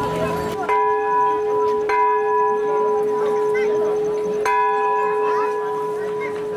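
A metal bell struck three times, a little under a second in, again about a second later, and once more past the middle, each stroke ringing on with a long, steady hum between strikes.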